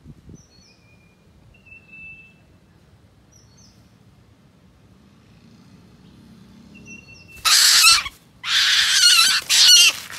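Female Asian koel held in the hand, giving three loud, harsh screeching calls in quick succession near the end, the distress screams of a captured bird. Earlier there are a few faint, thin whistled bird notes.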